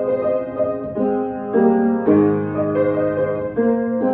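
Small wooden upright piano played with both hands: a slow piece of held chords under a melody, the harmony changing every second or so, with a fuller chord with low notes about halfway through.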